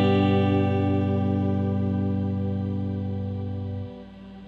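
A Gibson SG electric guitar with effects lets a single chord ring out. The chord fades slowly with a steady, gentle wavering, then is muted abruptly near the end, leaving a faint tail.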